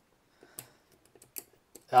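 Light, irregular clicks of a lock-picking rake worked in the keyway of a 20-pin brass Castle padlock under a tension wrench, as the pins are raked toward setting. There are about six small ticks with quiet between them.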